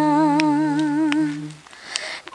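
A woman singing unaccompanied, holding one long note with a slight waver that fades out about one and a half seconds in.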